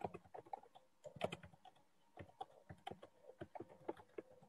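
Faint, irregular clicking of typing on a computer keyboard, with the busiest burst of keystrokes about a second in.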